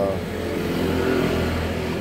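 Steady low engine hum of road traffic, a continuous drone with no single vehicle standing out.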